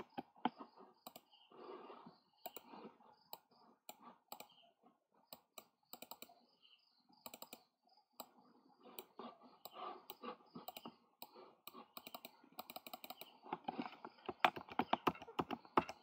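Computer keyboard and mouse clicking in short, irregular runs of keystrokes and clicks, busier in the second half.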